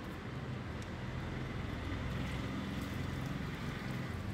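A motor running steadily somewhere, a low hum with a rumble under it.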